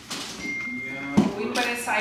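People talking in the background, with a single sharp knock a little over a second in.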